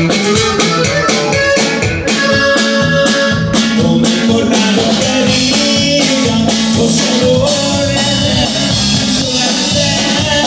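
Norteño band music with a steady drum beat under sustained melody notes and guitar.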